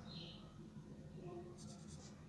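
Faint pencil scratching on paper as figures are written, ending with a quick run of about four short strokes.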